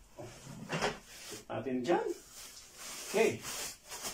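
Plastic wrapping rustling and crinkling in short bursts as it is pulled off a new fabric gaming chair. A man's voice is heard briefly in the middle, and he says "okay" near the end.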